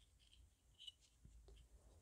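Near silence, with a few faint scratches and small clicks about a second in from the multimeter's red test lead being fitted onto a pin of the mass airflow sensor's connector.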